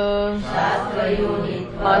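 A voice chanting a phrase of Sanskrit scripture commentary in a slow recitation melody. It holds a long note at the start, moves through shorter syllables, and begins a new phrase near the end.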